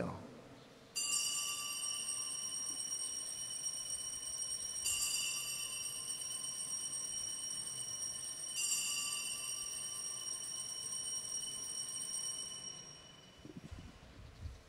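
Altar bells rung three times at the elevation of the consecrated host, each ring bright and sustained before the next, fading out near the end.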